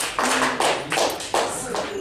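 A small audience clapping at the end of a talk: separate, loosely timed claps, a few a second, with voices mixed in.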